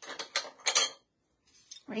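A small ceramic dish being set down and handled on the work table: three short clattering knocks in the first second, then a few faint ticks.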